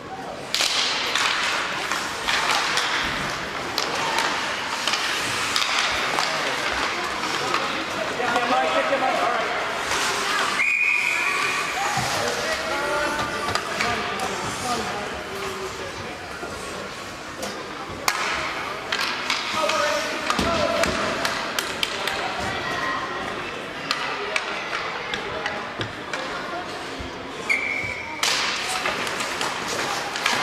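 Ice hockey game in a rink: sticks, puck and skates clacking and scraping on the ice amid spectators' voices. A referee's whistle blows twice, briefly, about 11 seconds in and again near the end.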